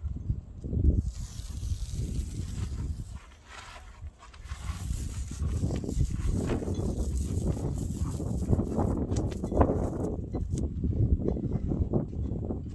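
Masking tape being peeled off a yacht's freshly painted deck edge and hull, an irregular ripping noise that dips about three seconds in and grows louder and steadier from about five seconds on.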